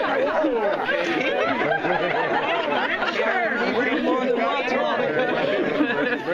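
Several people talking over one another in a steady chatter of voices, as a small crowd of guests reacts to a joke.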